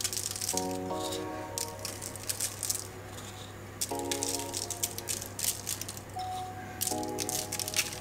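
Soft background music of held chords that come and go, over scattered light ticks of coarse brown sugar grains sprinkled by hand onto choux pastry on baking paper, with a steady low hum underneath.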